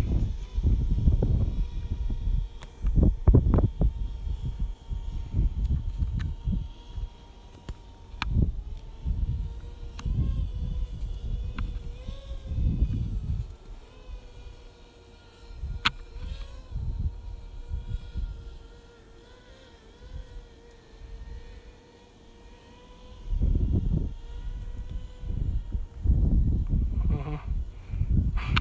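Wind gusting against the microphone in irregular bursts, loudest near the start and again near the end. Beneath it a drone's propeller hum holds a steady pitch, wavering briefly a few times in the middle as the drone manoeuvres.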